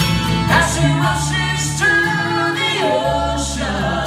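Live bluegrass band playing with voices singing, several at once (tagged as choir-like), over acoustic guitars, fiddle and electric bass.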